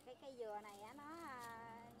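A faint voice speaking in short, rising and falling syllables, well below the level of the nearby conversation.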